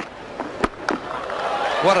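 Cricket broadcast audio: a sharp crack of bat on ball about half a second in, a lighter knock just after, then crowd noise swelling.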